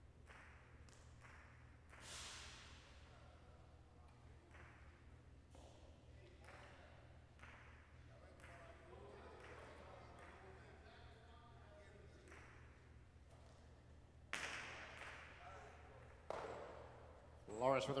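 Quiet room tone of a large hall with a steady low hum and a few faint knocks. Near the end come sharp smacks that echo: a jai alai pelota striking the hard court surfaces.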